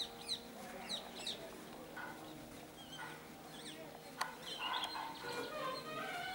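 Birds chirping in a quick run of short, high calls for about the first second and a half, then faint outdoor background with a sharp click about four seconds in.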